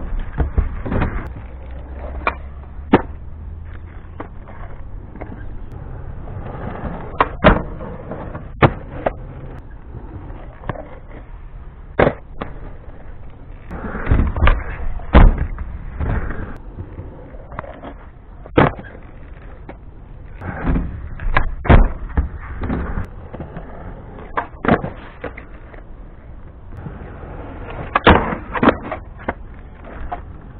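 Skateboard wheels rolling on concrete, broken by repeated sharp clacks and slaps as the board hits the ground and the ramp. The sound comes through a cheap action camera's microphone and is muffled, with no treble.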